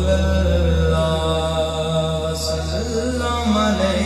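A man's voice chanting a devotional naat in long held notes that glide slowly in pitch, unaccompanied by drum strokes, over a steady low hum.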